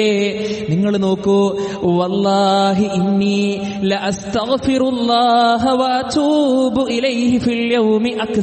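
A man's voice chanting Arabic recitation in long, wavering held notes, in the melodic style of Quran recitation.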